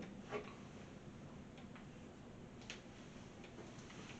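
Faint handling of a plastic blender cup over quiet room tone: a soft knock about a third of a second in, then a few faint ticks.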